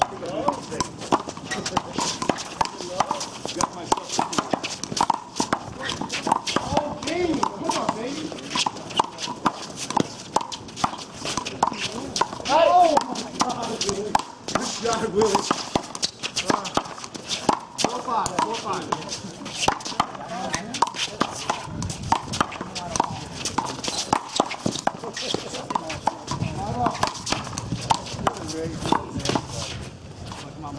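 One-wall handball rally: a small rubber ball slapping sharply and often off players' hands, the wall and the hard court, with the quick footsteps of players running.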